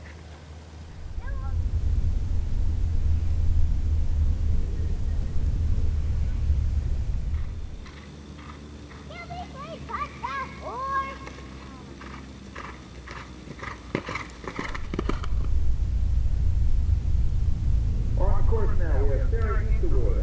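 Low, uneven rumble of wind buffeting the camera microphone across an open field, with a break in the middle. Distant voices come through about halfway in and again near the end, with a couple of sharp knocks just before the rumble returns.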